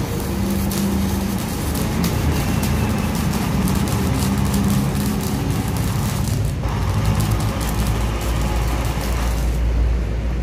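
Flux-core wire welding arc, run from an ordinary MMA stick welder with the wire fed by a drill-driven feeder, crackling and sizzling steadily over a low steady hum. The arc thins out briefly about six and a half seconds in and stops just before the end.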